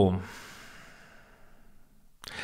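A man's long, soft sigh out through the nose, fading away over about a second and a half, right after a drawn-out spoken word.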